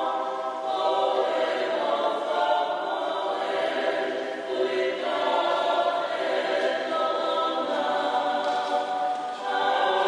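A church choir singing, many voices together holding long notes that change every second or two.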